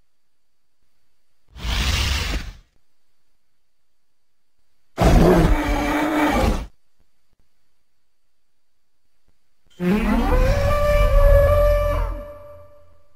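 Three creature-call sound effects for a reconstructed elephant, each separated by a few seconds of quiet. The first call, about two seconds in, is short and rough. The second, about five seconds in, falls in pitch and then holds. The last, starting near ten seconds, rises and then holds one steady pitch.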